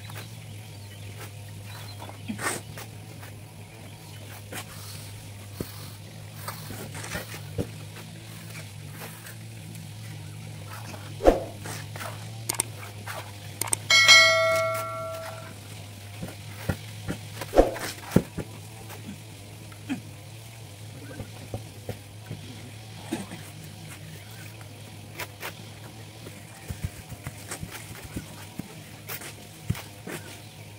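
Hand tools working cement mortar: shovel and trowel scrapes and clinks, scattered and irregular, over a steady low hum. About halfway through, a bell-like chime rings for about a second: the sound effect of a subscribe-button animation.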